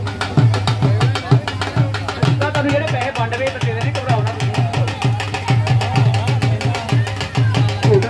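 Dhol drum played in a fast, steady beat, with voices underneath.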